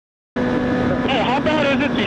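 Silence that cuts to a motorcycle engine running steadily at riding speed, about a third of a second in, with wind and road noise on a helmet camera's microphone.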